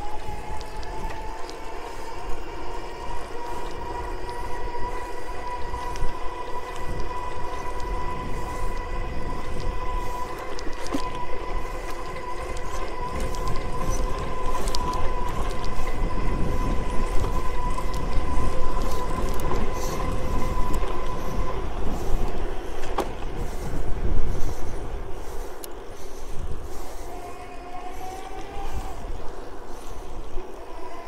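An electric bike's motor whining steadily while the bike is ridden. The whine fades about two-thirds of the way through and returns near the end with its pitch gliding as the speed changes. Wind rumbles on the microphone throughout, heaviest in the middle.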